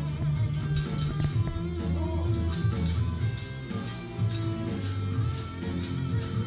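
Electric-guitar sound playing a melody over low bass notes. It is the output of a melody-morphing system: a melody computed as an intermediate between an original melody and a guitar melody.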